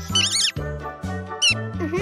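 A cartoon bunny's high-pitched squeaky chirps, a short quick run near the start and a brief one around the middle, over gentle background music.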